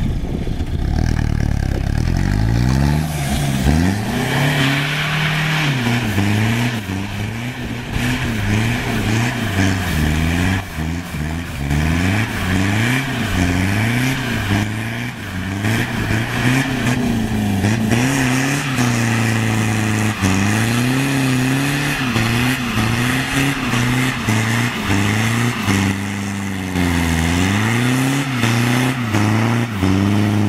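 Ford Courier ute's WL-T turbo-diesel four-cylinder revving hard, rising and falling every second or two, as the rear wheels spin through doughnuts. Tyre noise hisses under the engine.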